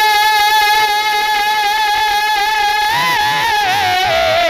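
A man's voice singing a naat through a microphone and PA, holding one long high note for about three seconds, then breaking into a wavering ornament that falls in pitch near the end.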